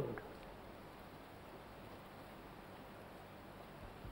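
A quiet pause with only a faint, steady hiss of background room tone.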